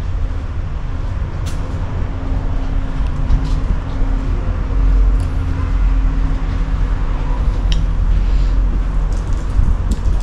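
Outdoor street ambience dominated by a fluctuating low rumble of wind buffeting the microphone on a walk, with a steady low hum for roughly the first six seconds and a few faint clicks.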